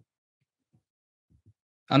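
Near silence between sentences of a man's talk; his voice comes back right at the end.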